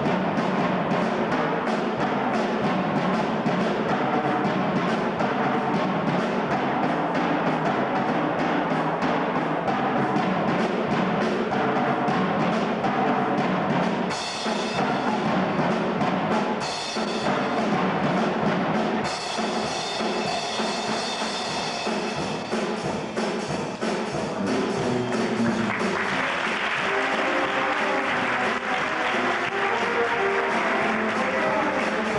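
A junior high school jazz big band playing live, drum kit under a brass and saxophone ensemble, heard from the auditorium seats. The band plays on without a break and grows brighter and fuller in the last few seconds.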